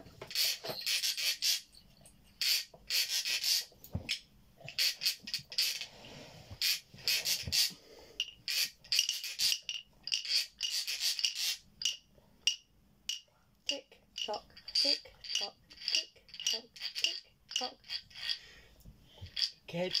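Children's toy percussion instruments shaken, scraped and tapped by hand: irregular clusters of rattling and rasping, then a run of short, separate, sharper taps in the second half.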